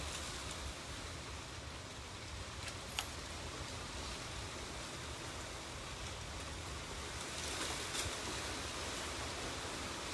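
Steady hiss of background noise, broken by one sharp click about three seconds in and a few faint ticks near the end.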